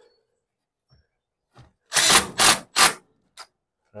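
Red cordless power driver running in three short, loud bursts about halfway through, driving a mounting screw to fasten an attic gable fan's mounting ear to the wood frame. A few faint clicks come before and after.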